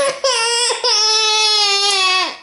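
Ten-month-old baby crying: a short cry, then one long wail held for over a second.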